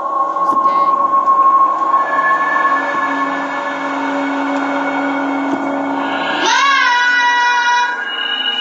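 Horror film score: sustained eerie tones that hold steady, with a swooping tone that rises and settles about six and a half seconds in.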